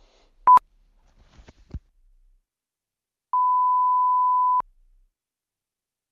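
Electronic beep tone sounding twice at the same pitch: a very short, loud bleep about half a second in, then a steady beep lasting a little over a second, with a few faint clicks between them.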